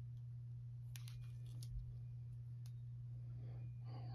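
Trading cards and a clear plastic card sleeve being handled, giving a few faint clicks and rustles about a second in and one more a little after the middle, over a steady low hum.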